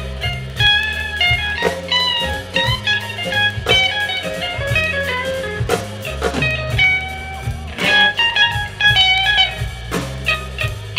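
Live blues band playing an instrumental passage: electric guitar lead with some bent notes over electric bass and drums.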